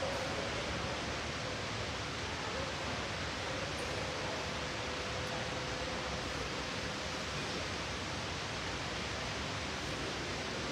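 Steady hiss of background noise with a faint, steady hum tone underneath.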